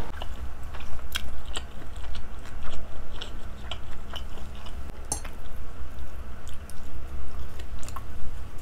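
Close-miked ASMR chewing of a mouthful of food, with many small, irregular mouth clicks and smacks.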